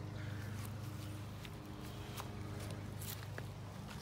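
Footsteps walking along the car, a few faint scuffs and clicks over a steady low hum.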